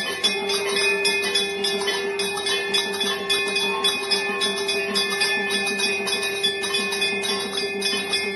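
Temple bells rung rapidly and continuously for the aarti, over a steady held tone.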